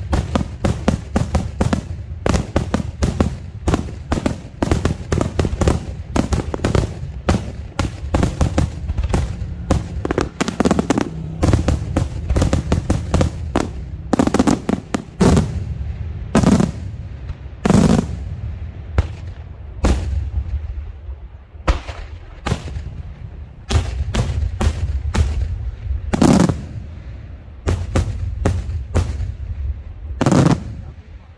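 Daytime aerial fireworks: a rapid, dense string of shell bursts going off high in the sky, bang after bang with a low rumble underneath. Several louder single booms stand out in the second half.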